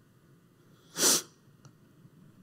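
A single short, sharp breath or sniff about a second in, in an otherwise near-silent pause.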